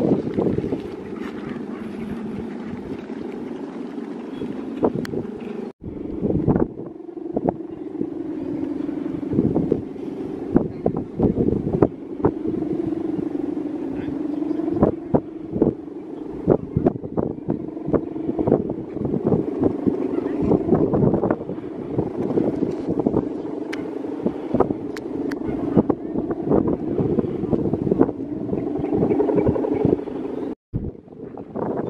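Steady droning hum from the guangan, the humming bow fitted across the top of a large Balinese bebean kite flying overhead, its pitch wavering slowly as the wind changes. Gusts of wind buffet the microphone throughout.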